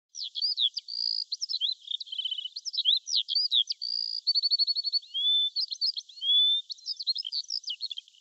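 A songbird singing a long, varied song of quick chirps, slurred whistles and short rapid trills.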